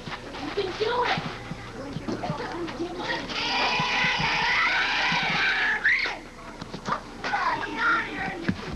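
High children's voices shouting and chattering across a softball field. Several voices overlap and grow louder from about three seconds in, ending in a rising shout around six seconds, then scattered calls.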